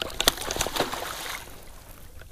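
Water splashing and sloshing as a hooked fish thrashes at the surface beside a kayak, with a few sharp splashes in the first second and dying down after about a second and a half.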